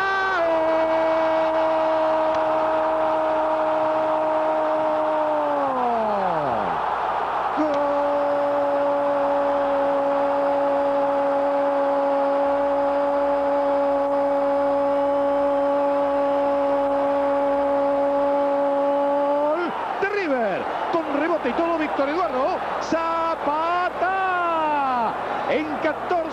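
A television commentator's drawn-out goal cry over steady crowd noise, marking a goal just scored. The cry is held on one high note for about six seconds and falls away, then is held again for about twelve seconds. Excited, broken shouting follows in the last few seconds.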